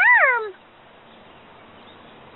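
A single meow-like animal call, rising and then falling in pitch, ending about half a second in.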